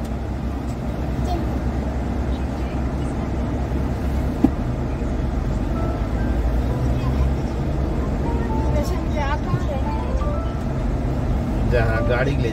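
Car cabin noise while driving: a steady low rumble of engine and tyres on the road, heard from inside the car, with one sharp click about four and a half seconds in.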